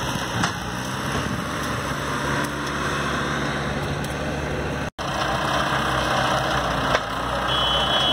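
Farm tractor engine running steadily with a low hum, cutting out for an instant about halfway through. A short high beep sounds near the end.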